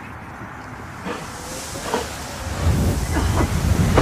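A dense white vapour cloud pouring out with a hiss that builds from about a second in. About two and a half seconds in, a loud low rumble joins it and keeps growing.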